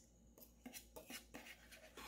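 Faint scrapes and light taps of a metal spoon scooping powdered milk, a few small ticks scattered through an otherwise near-silent moment.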